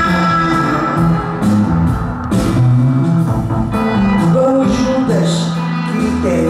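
Live band music with a woman singing into a microphone.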